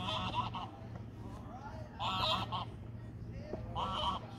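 A bird honking in short calls, three times about two seconds apart, over a steady low hum.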